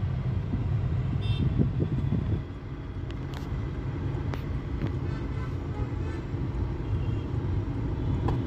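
Road noise heard from inside a moving car: a steady low rumble of engine and tyres in city traffic. It drops a little in loudness about two and a half seconds in.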